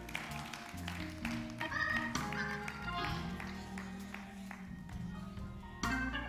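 A live church band playing quietly: sustained keyboard chords over bass notes that change every second or so, with a few light clicks.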